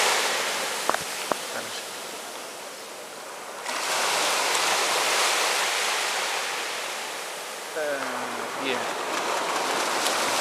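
Sea waves washing onto a beach: a steady hiss of surf that swells suddenly about four seconds in and then slowly ebbs. Two sharp clicks come about a second in, and a voice speaks briefly near the end.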